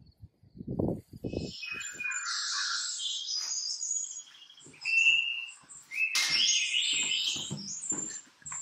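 Birds singing, a busy mix of high chirps, trills and short whistled notes, starting about a second and a half in. Just before that come two short, muffled low rustles.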